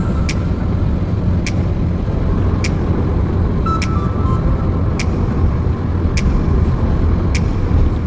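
Steady road and engine rumble of a car at highway speed, heard from inside the cabin. Over it runs background music: a light beat, a sharp tap about every second and a bit, with a few short high notes.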